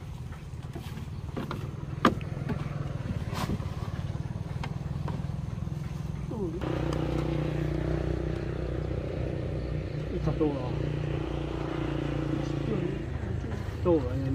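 An engine running steadily at a low idle, growing louder and fuller about six and a half seconds in, with a few sharp knocks early on and faint voices near the end.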